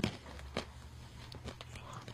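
A sharp click at the start, then a few faint scattered taps and small movement noises over a steady low hum: people shifting about near the studio microphones.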